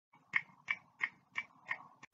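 Ticking stopwatch sound effect: five sharp, evenly spaced ticks, about three a second.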